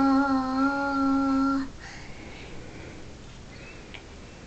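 A young girl singing, holding one long steady note that cuts off about a second and a half in, then a quiet small room.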